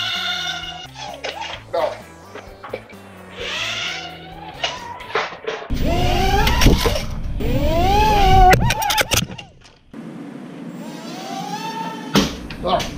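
Background music for about the first six seconds, then the motors of a micro quadcopter built from a Hubsan H107C spin up on a stand. Their whine rises and falls over a loud rush of propeller wash, drops out briefly near ten seconds, then starts rising again.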